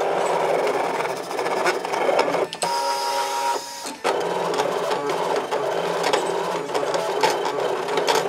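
A Brother DesignNCut electronic cutting machine cutting adhesive vinyl, its carriage and blade motors running very loud with a busy, clicking whir. A few seconds in, a steady whine takes over for about a second, then there is a brief lull before the cutting noise resumes.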